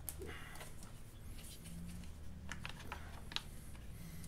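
Faint, scattered light clicks and taps of loose metal bolts and a plastic cover piece being handled, over a low steady hum.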